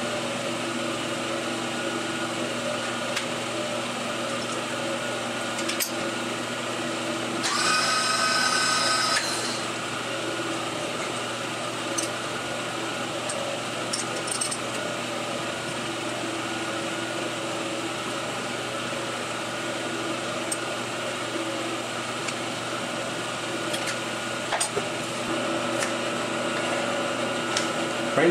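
Steady machine hum of a running three-phase converter, holding several fixed tones. About eight seconds in, a louder, higher whine lasts about two seconds, and a few light metallic clicks come from hands working the boring head.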